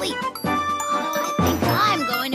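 Bright, jingly music with a voice over it.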